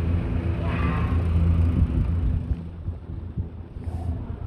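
Steady low hum of an idling engine, easing off about two and a half seconds in, with a brief faint voice about a second in.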